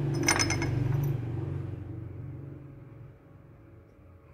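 Porcelain tableware clinking: a single light clink about a third of a second in that rings briefly, over a low hum that fades away.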